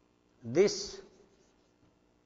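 A man's voice saying the single word "This" about half a second in, over a faint steady hum.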